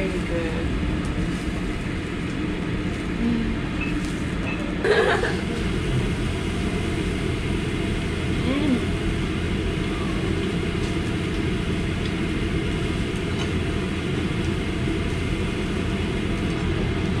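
Steady low rumble of ventilation noise throughout. A woman's brief 'mm' and laugh come at the start, and a short sound about five seconds in.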